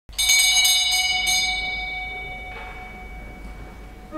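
A small high-pitched sacristy bell struck about five times in quick succession, its ringing fading over the next second or so; it signals the start of Mass as the priest enters.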